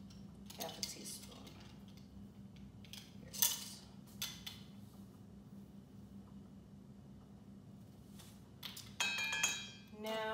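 Metal measuring spoons clinking and clattering as they are handled, with a few short clicks and a louder ringing clatter near the end.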